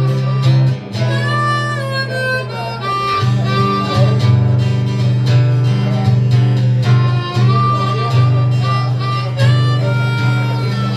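Harmonica playing the lead line over a strummed acoustic guitar in a live instrumental break, with held notes that bend and slide in pitch.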